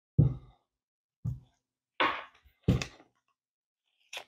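Cured fiberglass shell being pushed and flexed by gloved hands to release it from its taped form: four short thunks and crunches, each dying away quickly.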